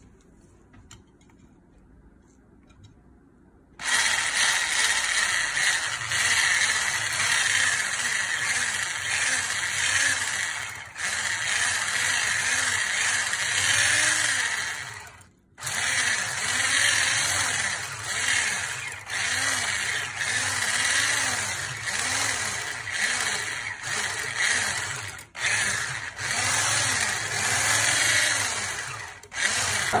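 Electric hand blender with a whisk attachment whipping a thick butter-and-oil mixture in a plastic bowl. It starts about four seconds in and runs steadily. It stops for a moment about halfway through and dips briefly a few more times.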